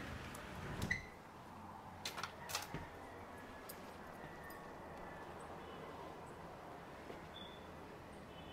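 A hinged door being opened: a low rumble and a click in the first second, then a few light knocks about two seconds in, then faint steady outdoor background.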